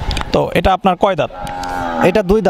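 Cattle lowing: one steady, held moo in the second half, after a few spoken words.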